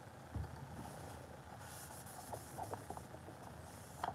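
Faint handling noises from gloved hands spreading paint over a cork board: a soft low bump about half a second in, then light rubbing and a few small clicks.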